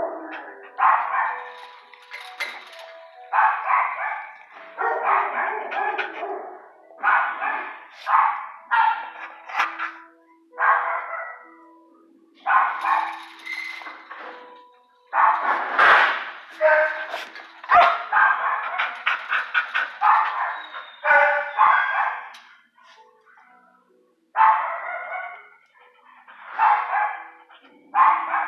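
Dog barking in repeated bursts, every second or two with short gaps, over a faint steady hum.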